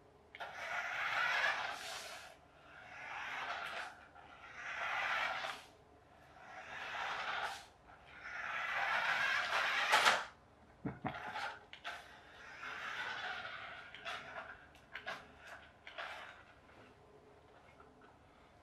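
Battery-powered radio-controlled toy Formula 1 car driving on a wooden floor: its small electric motor and gears whir in repeated bursts of throttle, each one rising and falling over a second or two. About halfway through, the bursts become shorter and choppier.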